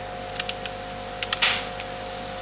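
A few light clicks, a couple in quick succession, with a short rustle about one and a half seconds in, over a steady two-note electrical hum.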